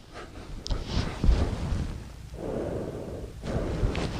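A man rolling from his side onto his stomach on an all-foam mattress: his clothes rustle against the mattress cover, with a soft low bump about a second in.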